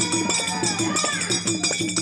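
Folk music led by a dimmi hand drum played in an even rhythm of about four strokes a second, with metal jingles ringing above it and a voice singing a short gliding phrase about halfway through.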